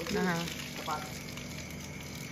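A woman says a short word near the start, over a steady hiss with a faint, thin, high steady tone.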